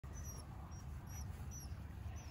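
Short high-pitched chirps, each slightly falling, repeating about twice a second over a steady low rumble.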